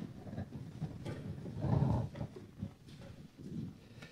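Low, muffled shuffling and bumping of a congregation sitting back down, with a louder swell a little under two seconds in.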